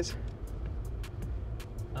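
Steady low rumble of a 2022 Jeep Wrangler driving along a dirt road at low speed, engine and tyre noise heard from inside the cabin.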